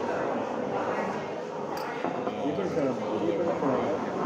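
Overlapping voices of a group of people chatting, with one brief sharp click a little under two seconds in.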